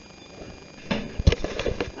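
A quick, irregular run of clicks and knocks starting about a second in, like something being handled or fumbled close by, over a faint steady hum.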